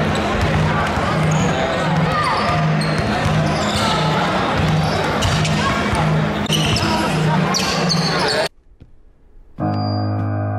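Noisy gym crowd chatter with a basketball being dribbled, a low bounce about twice a second. Near the end the sound cuts out abruptly and a low, held musical tone begins.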